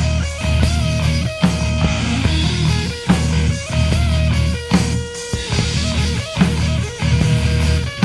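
Instrumental passage of a heavy metal / progressive rock song: distorted rhythm guitar and bass under a melodic lead guitar line that steps and bends in pitch, with drums hitting throughout.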